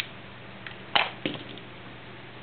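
A few clicks, then a sharp knock about a second in followed by several lighter clicks. This is a hard-cured clear epoxy resin star being worked out of a silicone ice cube mold and set down on a table.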